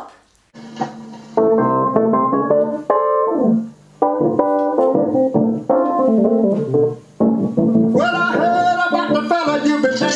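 Hammond organ playing the opening lick of a soul recording, with the fuller band sound coming in about eight seconds in.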